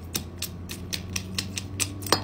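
Hammer tapping rapidly at ice frozen onto a rubbery snapper fidget toy on concrete, chipping the ice off: a quick, uneven run of light sharp taps, several a second.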